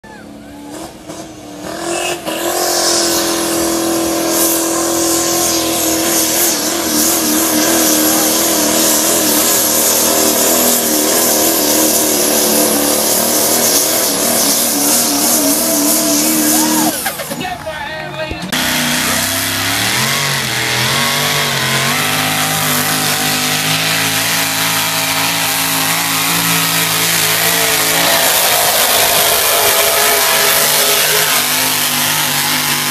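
Engine of a competition pulling vehicle running hard at high revs while it drags a weight sled. It is loud from about two seconds in, with a wavering pitch. It drops briefly about seventeen seconds in, then revs back up and holds.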